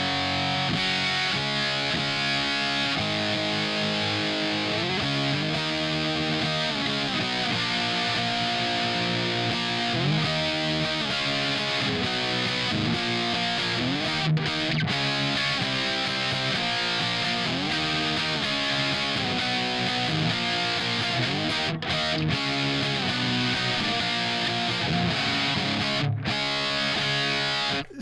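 Distorted electric guitar riffing from a basswood guitar with a JB humbucker through a Marshmello Jose 3Way 50-watt amp head on its higher-gain stage, with the master volume's push-pull switch pulled. This gives the tone a little more squish: more compressed and slightly lower in volume. The playing is continuous, with slides, and breaks off briefly a few times. It is heard through a UA OX Box speaker emulation on its Greenback Punch setting, with no effects.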